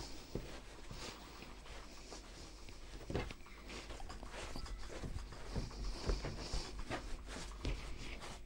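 Hands kneading a soft spelt wholemeal yeast dough on a floured wooden board: quiet, irregular pats and squishes as the dough is pressed and folded.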